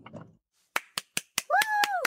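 Quick sharp hand claps or finger snaps, about five a second, starting just under a second in. A short high voice cry rises, holds and falls about one and a half seconds in.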